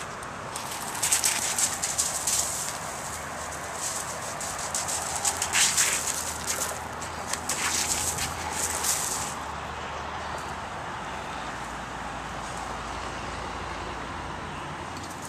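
Paws and feet crunching and scuffing on gravel in irregular bursts as a dog runs about, for roughly the first nine seconds, then only a quieter steady low background noise.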